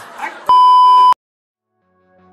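Electronic beep sound effect: one loud, steady, pure-sounding tone lasting about two-thirds of a second, starting about half a second in and cutting off abruptly into silence.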